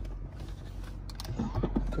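A few light, sharp clicks about a second in, over a low steady hum in a car cabin.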